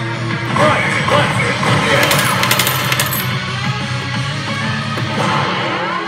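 A Resident Evil 6 pachislot machine playing its bonus-mode music loudly and steadily, with a burst of rapid clicking between about two and three seconds in.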